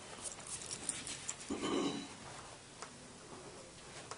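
Classroom room noise during quiet seatwork: scattered small clicks and taps, with one brief louder muffled sound about a second and a half in.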